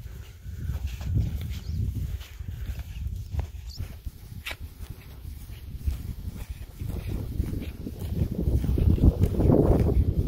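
Footsteps of a hiker walking on a dirt trail, with a low rumble of wind on the microphone that grows louder near the end.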